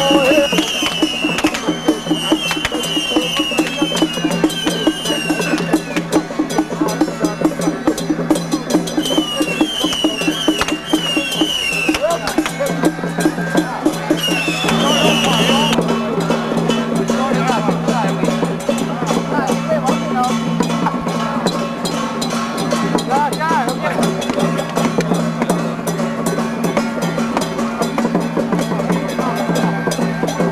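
Temple procession music: rapid drum and gong percussion, with a high wind-instrument melody in roughly the first half and crowd voices under it.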